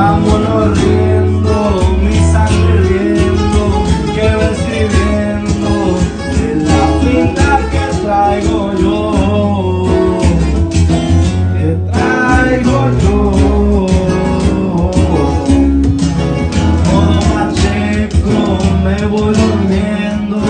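Live music: a man sings into a handheld microphone over a strummed acoustic-electric guitar.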